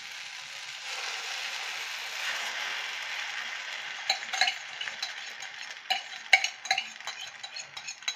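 Beaten egg sizzling as it is poured into a hot frying pan. From about four seconds in, a metal spoon clinks repeatedly against the steel tumbler, scraping out the last of the egg.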